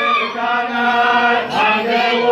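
A mixed group of men and women chanting a traditional Dinka song together, voices held in long sustained notes, with a sharper vocal burst about one and a half seconds in.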